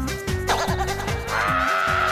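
A woman screaming in shock: a short rising cry, then from about two-thirds of the way in a long, high, held scream. Background music with a steady beat plays underneath.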